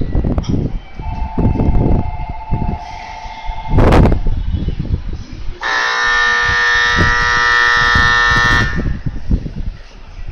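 Train horn sounding one steady blast of about three seconds, starting a little after halfway. It is preceded by a thinner steady tone for about three seconds and a short, sharp blast about four seconds in, over wind and rumble on the microphone.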